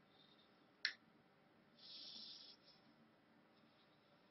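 Near silence with a single short sharp click about a second in, followed by a brief faint hiss around two seconds.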